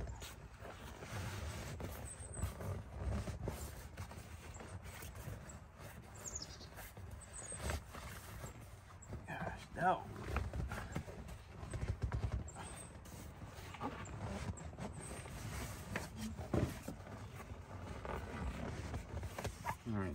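Camouflage fabric seat cover being pulled, stretched and tucked over a truck seat: irregular rustling and handling with scattered knocks and thumps, and a few short murmured vocal sounds.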